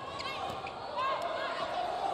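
Arena crowd noise during a volleyball rally, with short high squeaks of sneakers on the court and a single sharp smack about half a second in.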